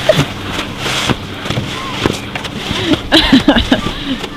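Short bursts of voices and laughter over a continuous scraping hiss of skis sliding on packed snow, with scattered clicks.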